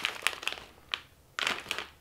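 A plastic bag of pork rinds crinkling as it is handled and turned, in short irregular spells of crackling.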